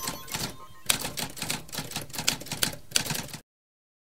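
Typewriter-style typing sound effect: a quick run of key clicks that stops abruptly about three and a half seconds in, leaving dead silence.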